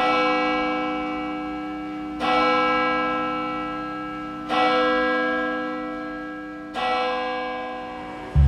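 A church bell tolling four slow strokes, each ringing on and fading before the next.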